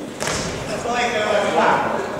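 Voices calling out in a large, echoing hall, with a short sharp smack just after the start, as of a boxing glove landing.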